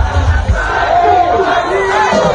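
Large marching crowd, many voices shouting at once, with a few long held calls rising above the din.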